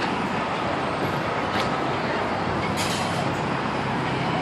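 Steady rushing noise from aboard a spinning spider-style amusement ride in motion, with short hissing bursts about one and a half and three seconds in.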